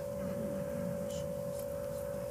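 A single steady tone held at one mid pitch, unchanging, over faint room background.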